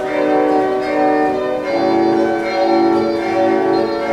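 Pipe organ playing 18th-century Baroque music: held chords of steady, overtone-rich pipe tones that move to new notes every second or so, with a fuller, lower chord coming in a little before halfway.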